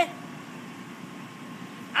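Steady low background hum with a faint, steady high tone running through it.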